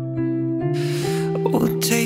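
Slow guitar accompaniment on LAVA ME 4 guitars: a held chord, with new notes picked about half a second and a second in. The singer draws an audible breath near the middle, and his voice comes in near the end.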